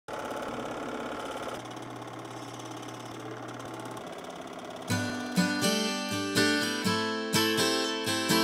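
A steady whirring noise with a low hum, then about five seconds in acoustic guitar strumming begins at about two strums a second, opening the song.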